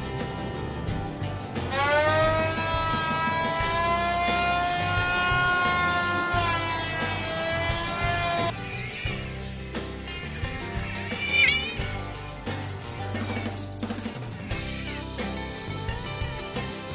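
Background music, with a steady high-pitched electric motor whine from a handheld power tool working a teak board from about 2 s to 8 s; the whine rises slightly as it starts.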